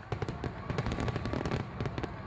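Fireworks crackling: many quick sharp pops over a low rumble.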